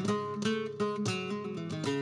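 Flamenco guitar playing alone between sung verses: plucked runs and strummed chords, with a new attack about every half second.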